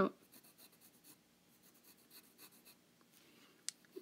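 Graphite pencil sketching on paper: faint, short scratchy strokes, with one sharper click near the end.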